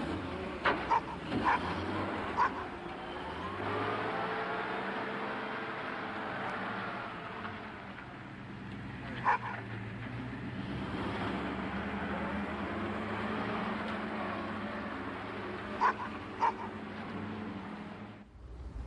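A car engine running steadily, its pitch rising and falling as it pulls away, with a few short sharp sounds standing out above it.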